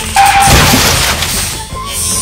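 A loud crash-and-shatter effect: a sudden burst of noise that fades over about a second and a half, over background music.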